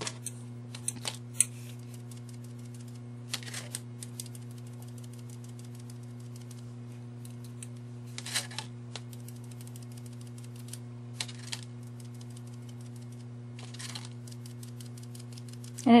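Small soft taps and clicks in short clusters as a foam brush pounces Mod Podge onto a wax pillar candle, over a steady low hum.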